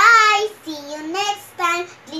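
A young girl's voice in a sing-song tone, in about four short phrases that rise and fall in pitch, the first one the loudest.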